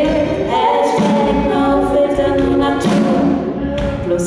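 Live female vocal group singing in close harmony, several voices holding lines together over a deep, pulsing bass.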